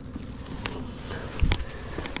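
Honeybees humming steadily around an open hive, with a light click and then a dull wooden knock about one and a half seconds in as hive frames are handled.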